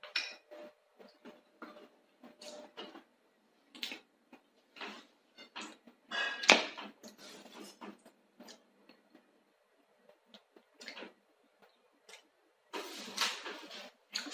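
Mouth sounds of a person tasting food from a spoon: soft, irregular lip smacks and clicks, with a louder clatter about six and a half seconds in and a denser rustling stretch near the end.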